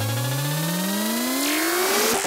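Electronic dance music build-up: a synthesizer sweep rising steadily in pitch with the bass dropped out, and a rush of noise swelling in about a second and a half in.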